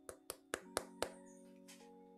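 Quiet lo-fi background music with held notes, over a quick run of sharp clicks and taps in the first second or so as an oracle card deck and its box are handled.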